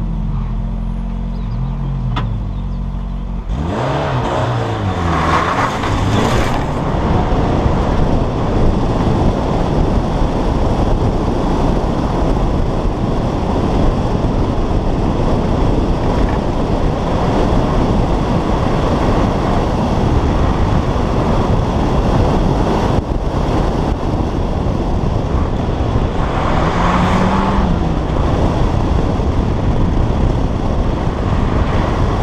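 Peugeot 309 GTI rally car's four-cylinder engine held on the throttle at the start, then launching about three and a half seconds in and accelerating hard through the gears on a dirt track. Once moving, heavy wind and tyre noise over the exterior-mounted camera swamps much of the engine, with another rise and fall of revs near the end.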